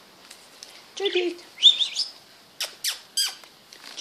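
Small pet parrots calling: a short high chirp about two seconds in, then three sharp, quickly falling calls in quick succession near the end.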